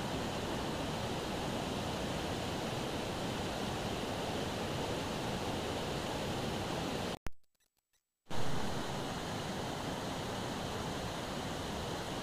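Fast river rapids rushing in a steady, even noise. The sound drops out completely for about a second just past the middle, then returns.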